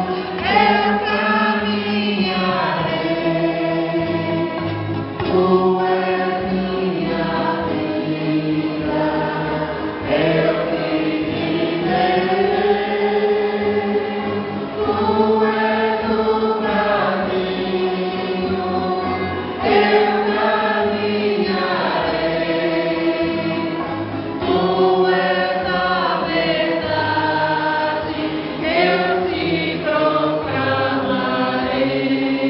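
A group of voices singing a hymn together, in long held phrases that rise and fall.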